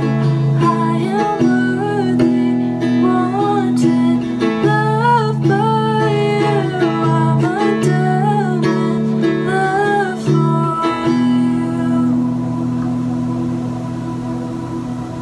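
A woman singing a slow worship song to her own strummed acoustic guitar. About eleven seconds in the voice stops and the guitar plays on alone.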